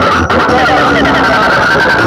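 Loud music with a singing voice and heavy bass, played through a stacked DJ box speaker rig topped with rows of horn speakers during a sound test.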